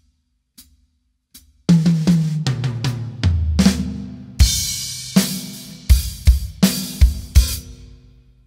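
Drum kit played slowly: a few faint ticks keep time, then a fill of drum hits steps down in pitch from high to low toms. A cymbal crash with a bass drum hit follows about halfway in, then several more bass drum and cymbal accents.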